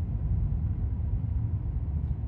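Steady low rumble of road and engine noise inside a moving car's cabin, cruising on a highway.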